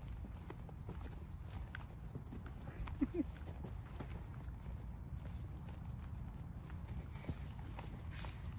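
A horse trotting on grass, its hoofbeats faint and irregular, with one brief voice-like call about three seconds in.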